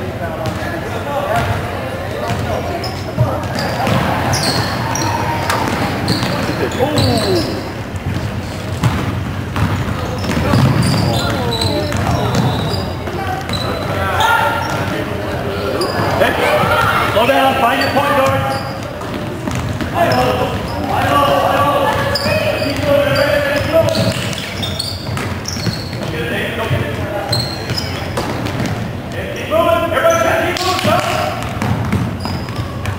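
Basketball game on a hardwood gym floor: the ball bouncing in repeated dribbles, shoes squeaking now and then, and players' and spectators' voices echoing in the large hall.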